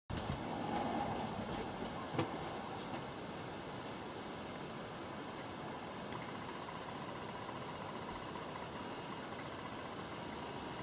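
Steady low-level running noise of a vehicle, with a single click about two seconds in.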